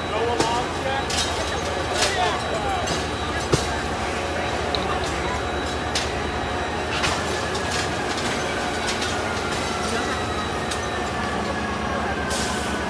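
A parked fire truck's diesel engine running steadily with a low rumble, with occasional knocks and a faint whine that slowly falls in pitch from about halfway through.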